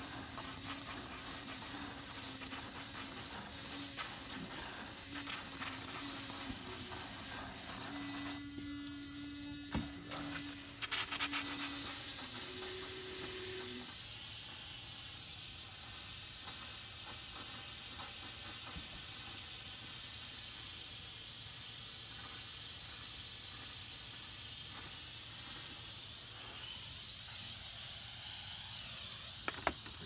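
Compressed air and water spraying from a travel trailer's outdoor shower head as the water lines are blown out with an air compressor. It is a steady hiss that grows louder and airier about eleven seconds in. A low steady hum runs under the first twelve seconds or so.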